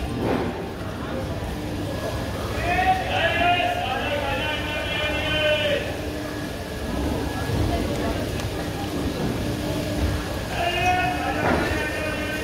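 Low, steady rumble of an LHB passenger coach rolling slowly along the platform. Over it, a drawn-out, wavering voice calls out about three seconds in and again near the end.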